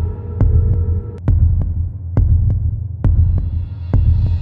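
Suspense sound effect: a low, heavy heartbeat-like throb pulsing about once a second, each beat with a sharp click on top. A faint high hiss swells in near the end.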